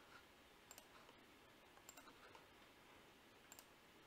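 Near silence with a few faint computer mouse clicks: three short pairs of clicks, irregularly spaced.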